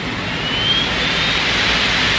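Flying Pig Pro pet grooming dryer running, a steady rush of air from its hose nozzle. A faint whine rises slightly about half a second in.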